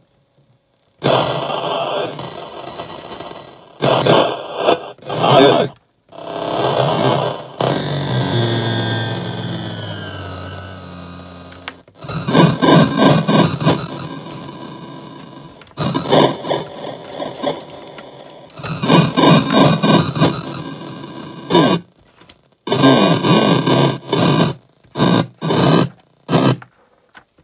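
Circuit-bent Mix Me DJ toy beat machine playing its beats through its small speaker, the pitch and speed swept by added potentiometer pitch-bend mods, with a long falling glide near the middle as playback slows. Playback cuts out suddenly and restarts several times, the machine being set to its time-limited demo mode.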